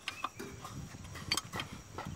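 A few sharp, scattered metal clicks and clinks from a ring spanner working a bolt on a Suzuki Carry Futura's transmission mounting as the bolt is undone; the loudest click comes just past the middle.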